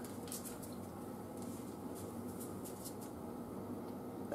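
Spring rolls frying in an electric deep fryer: a faint steady sizzle of hot oil with scattered soft crackles.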